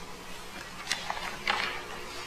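A few short, sharp clicks and a brief rustle over a steady low room hum.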